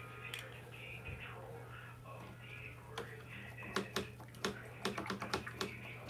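A faint steady hum, then from about three seconds in a run of light, irregular clicks and taps that come more often toward the end.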